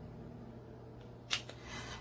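A low steady hum with one sharp tap about a second and a quarter in, then a soft short rustle, from hands handling tarot cards and a small metal charm on a wooden table.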